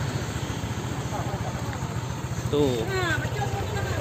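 Small motor scooter engine idling steadily with a low, even pulse.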